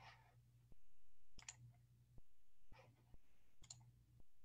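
Faint scattered clicks over a low hum that cuts in and out, picked up by a computer microphone on a video call.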